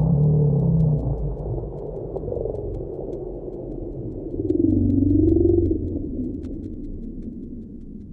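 Ambient outro of a metal demo track: a low, muffled rumbling drone that grows duller and fades out. About halfway through, a wavering pitched tone swells up and dies away.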